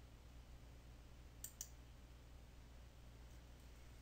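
Near silence: a low steady hum, with two faint sharp clicks close together about a second and a half in.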